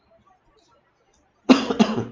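Near silence, then about a second and a half in, a person coughs twice in quick succession.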